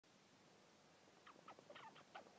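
Faint, short, high squeaks from a pet white rat, several in quick succession in the second half.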